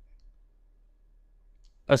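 A pause in a man's speech: near silence with a faint low hum, until his voice starts again near the end.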